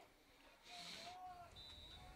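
Near silence: faint outdoor background with a faint distant voice and a brief soft hiss.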